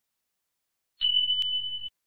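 Notification-bell sound effect from a subscribe-button animation: one steady high-pitched electronic tone lasting just under a second, with a short click in the middle of it.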